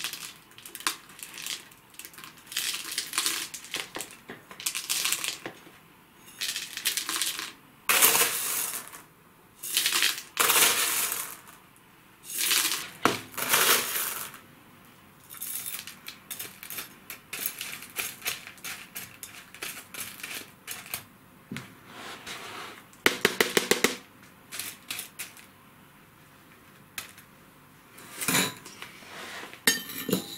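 A metal spoon scooping expanded-clay pellets and ZeoFlora granules and tipping them into a plastic orchid pot: repeated dry rattling pours of the small stones, with clinks of the spoon, separated by short pauses. About three quarters through comes a quick run of clicks.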